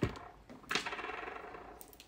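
A deck of cards handled and thumbed through, a rapid run of small clicks lasting about a second, after a single tap at the start.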